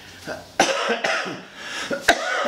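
A man coughing into his fist, starting suddenly about half a second in and going on in a rough burst for about a second.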